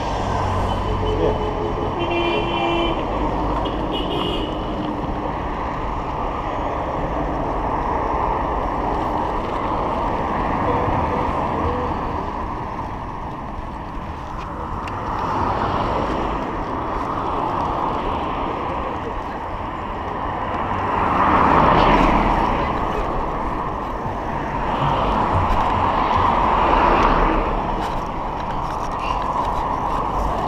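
Road traffic heard from a moving bicycle: a steady rush of wind and passing cars. One vehicle passes close and loud about two-thirds of the way through, rising and then falling away.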